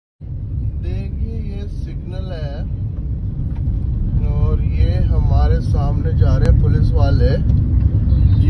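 Low rumble of a car driving along a road, heard from inside the cabin, growing gradually louder.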